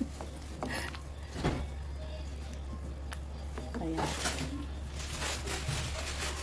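Wooden spoon stirring sliced vegetables in broth in a metal pot, with a few soft knocks and scrapes, over a steady low hum.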